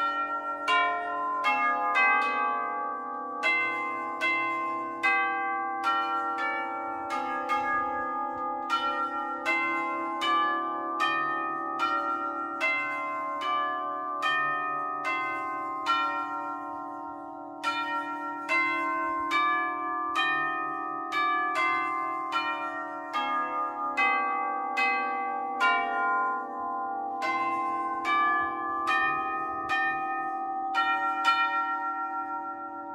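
A set of tubular chimes, long metal tubes hung in a wooden frame, struck one at a time to play a slow melody. Each note rings on into the next, and there is a short pause just past halfway.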